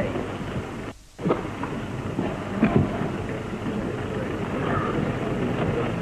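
Low murmur and stir of a crowd in a hall, heard through the hiss and crackle of an early-1930s optical film soundtrack, with a brief drop-out in the sound about a second in.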